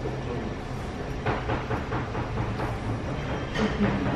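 Bottled tea being poured into a glass, over a steady low hum of restaurant ambience with background voices and a few light clicks.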